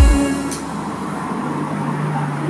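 The song ends on a single deep low boom, then a steady rushing background noise takes over, with a low steady hum joining about one and a half seconds in.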